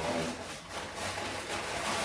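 Paper takeaway bag rustling and crinkling as a hand rummages inside it, an irregular crackling with no pauses.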